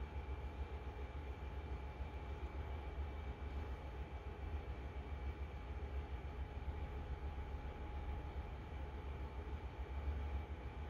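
A steady low hum with a few faint steady tones over a light hiss, unchanging throughout: background room noise.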